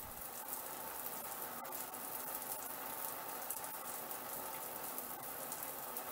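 Mira Advance ATL electric shower running, water spraying steadily from the shower head, during its commissioning run at temperature setting eight.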